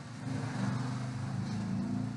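A motor vehicle's engine passing by: a low hum that swells up at the start and holds steady.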